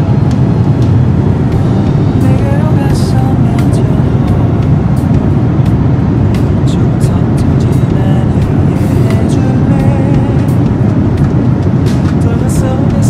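Airliner cabin noise in flight: a loud, steady rush of engines and airflow, strongest in the low range, with faint voices and a few small clicks on top.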